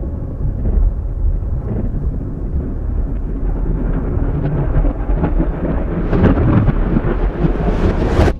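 A deep, continuous thunder-like rumble that swells a little about six seconds in.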